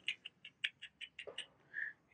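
Light, irregular clicking, about six clicks a second: a sugar glider's claws catching on the wire mesh of its cage as it moves about.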